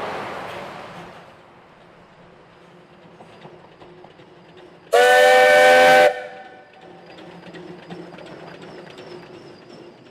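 Steam whistle of a narrow-gauge steam locomotive, most likely Baldwin 608: one loud blast of about a second, several notes sounding together, near the middle. Around it the locomotive is heard more quietly as it runs past, with faint ticking from the train on the rails.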